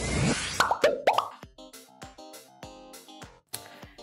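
Edited-in transition sound effects: a whoosh with a rising sweep, then three quick rising cartoon pops, leading into a light background music bed with a steady beat.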